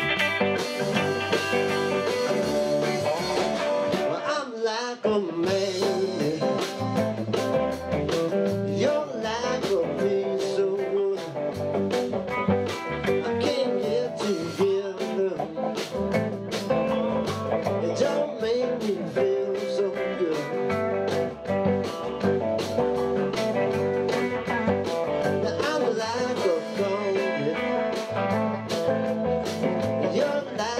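Live band playing amplified through a PA: electric guitars open the song, and the drum kit comes in with a steady beat about five seconds in.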